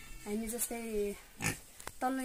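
A domestic pig in a pen gives a short grunt about halfway through, under a woman's talking.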